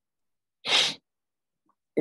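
A single short burst of breath noise from a person, just over half a second in and lasting under half a second.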